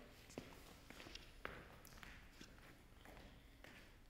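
Near silence with a few faint footsteps on a stage floor, soft scattered taps.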